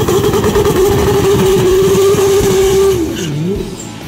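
Drag car's engine held at steady high revs during a burnout. Near the end the revs drop sharply and pick back up as the sound falls away.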